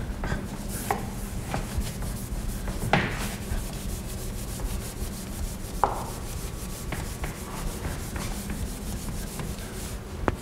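A cloth rubbing over a blackboard, wiping off chalk writing, with two sharp knocks, one about three seconds in and one near six seconds.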